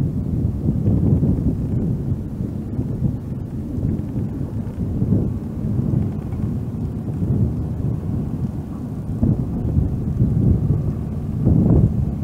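Wind buffeting the microphone outdoors: an irregular low rumble that swells and fades.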